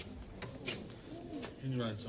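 A man's low wordless voice, a short grunt or mumble with sliding pitch, near the end. A few light clicks come before it.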